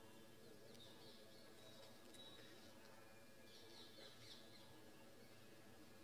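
Near silence: faint room tone, with a few faint, short, high chirps scattered through it.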